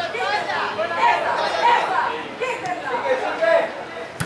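Several indistinct voices talking and calling at once, overlapping, with no clear words.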